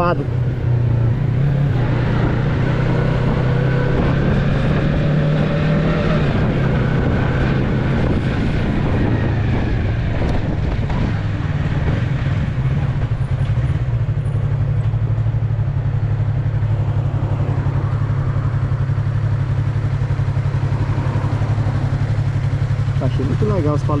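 Yamaha MT-03's parallel-twin engine running steadily under the rider at low city speed, its note shifting a couple of times, about six and fourteen seconds in, as the bike slows.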